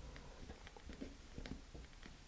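Faint handling noises from fingers working a rubber-glove fingertip, string and thin igniter wire: a scattering of small clicks and rubs over a low steady hum.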